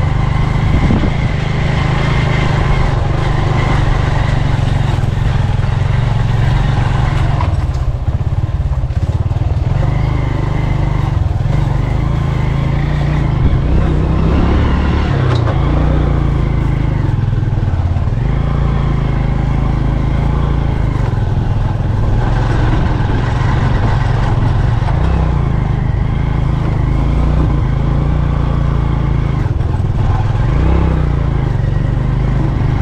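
Motorcycle engine running steadily as the bike is ridden along a dirt footpath, heard from on the bike. The engine note rises and falls a little now and then.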